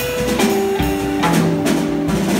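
A small live band playing instrumental music: electric guitars holding and changing notes over drum and cymbal hits.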